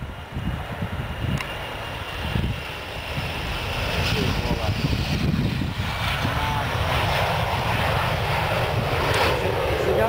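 Panavia Tornado GR.4's twin RB199 turbofan engines on landing approach with the gear down, a broad jet rumble growing steadily louder about three seconds in as the aircraft nears.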